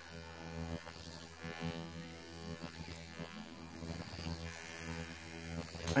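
Handheld ultrasonic skin scrubber buzzing steadily as its metal spatula blade is worked over the skin of the face, sloughing off dead skin.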